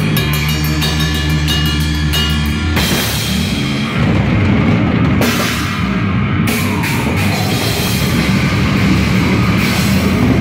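Death-grind band playing live at full volume: drum kit with crashing cymbals under heavily distorted electric guitars. About three seconds in, a steady riff with fast, even drum hits gives way to a denser, noisier section.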